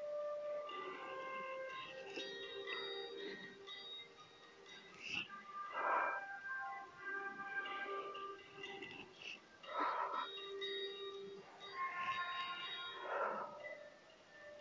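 Quiet background music with sustained notes, with a woman breathing out hard in a few audible exhalations, the loudest about six and ten seconds in and another near the end. The breaths follow the effort of an alternating abdominal crunch.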